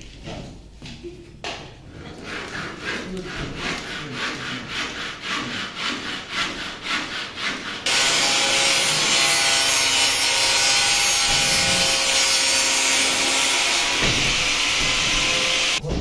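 Rhythmic back-and-forth scraping strokes on a ceiling panel, about three or four a second and growing louder. About halfway through, an angle grinder with a cutting disc starts abruptly and cuts the panel with a loud, steady whine, stopping just before the end.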